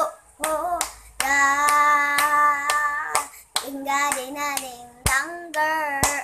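A young girl singing without accompaniment, holding long notes, while her hands slap out a beat on a windowsill, a sharp smack every half second or so. Near the end she sings "come come".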